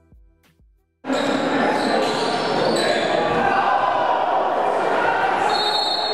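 Music fades out, then about a second in live basketball game sound in a gymnasium starts abruptly and runs on steadily: a bouncing basketball and crowd voices echoing in the large hall.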